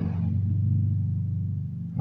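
Electric motor of a Toshiba twin-tub washing machine humming steadily, easing off slightly toward the end.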